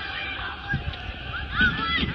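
Short, high-pitched shouts from children playing football, heard from across the pitch, mostly in the second half.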